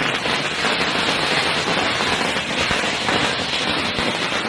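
Firecrackers going off in a continuous, dense crackle with no break.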